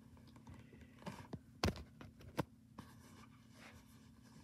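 Plastic DVD case handled close to the microphone: soft scrapes and a few sharp clicks and knocks, the loudest a little past halfway and another shortly after, over a low steady hum.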